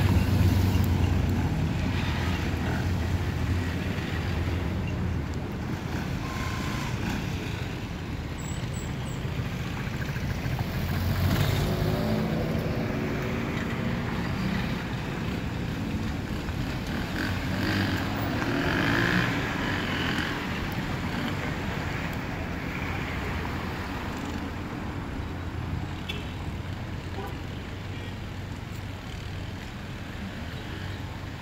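Street traffic: motor vehicles going past, a close truck loudest at the start and fading away, then further cars swelling and fading as they pass.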